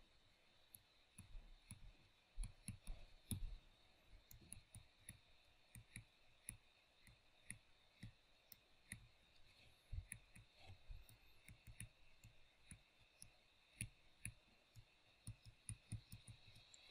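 Near silence broken by faint, irregular clicks and taps, a few a second, from a stylus writing on a tablet.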